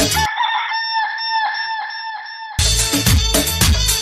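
The dance music drops out, leaving a chicken clucking in a quick, even run of clucks on one pitch, about four or five a second. The full beat comes back in about two and a half seconds in.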